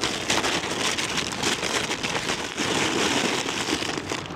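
A lightweight fabric stuff sack rustling and crinkling as hands pack gear into it, a dense crackle with no pauses.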